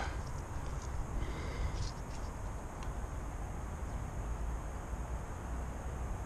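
Steady low outdoor background rumble with no distinct event, and a few faint light rustles about one to two seconds in.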